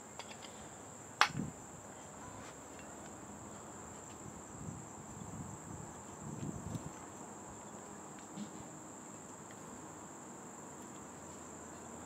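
Crickets chirring steadily in a high, even band throughout. There is one sharp click about a second in and a few faint, low knocks around the middle.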